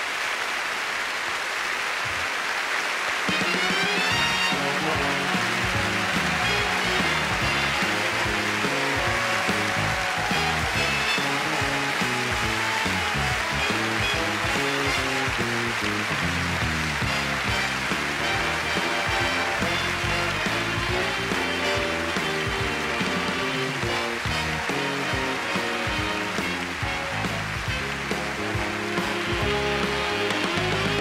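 Big band playing an instrumental tune, with a moving bass line under horns, coming in about three seconds in as applause fades out.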